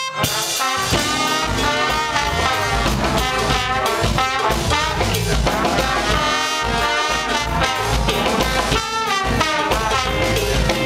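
Live brass-funk band: several trombones playing a riff together over a drum kit, with a momentary break at the very start before the band comes back in.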